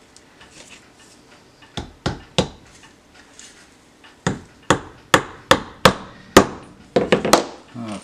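Soft-face mallet tapping upholstery tacks through burlap into a western cedar board. Three taps about two seconds in, then a quicker run of about nine sharper taps from about four seconds in.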